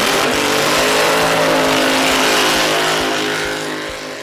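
Drag racing car's engine held at high revs, a harsh, dense exhaust and tyre noise that is steady in pitch and fades away near the end.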